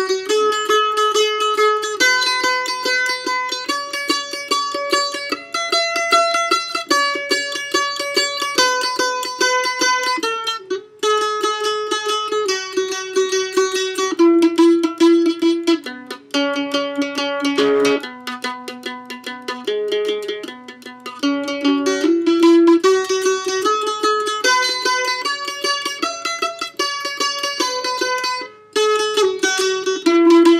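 Mandolin picked with rapid alternating down-and-up strokes from a loose wrist, each note struck many times before stepping up or down to the next. The playing breaks off briefly about eleven seconds in and again near the end.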